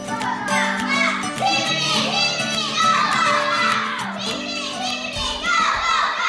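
Several children's voices calling out and shouting excitedly over steady background music with guitar.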